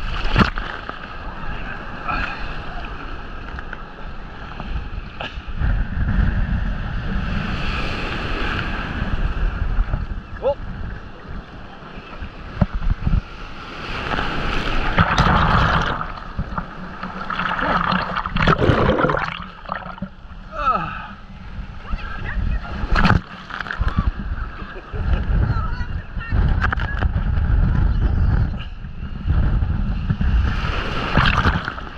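Surf breaking and washing around a camera held at the waterline, with water splashing against the housing and heavy low rumble from water and wind on the microphone. The wash surges louder a few times, most strongly about halfway through. Faint voices come and go.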